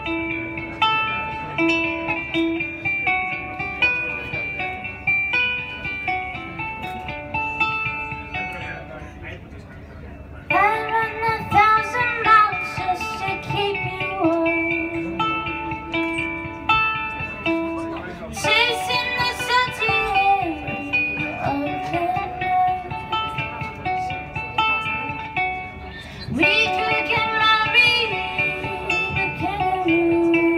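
A ukulele played in a run of separate plucked notes. A voice comes in singing over it about a third of the way in, in three phrases.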